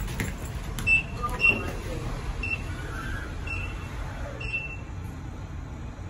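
Short high-pitched electronic beeps from a lift, five at uneven intervals over the first four and a half seconds, the first two loudest, over a steady low hum of the lift and its surroundings.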